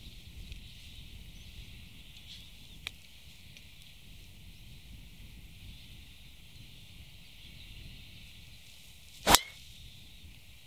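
Driver striking a golf ball off the tee: one sharp crack about nine seconds in, the loudest sound, over low steady outdoor background noise. A faint tick comes about three seconds in.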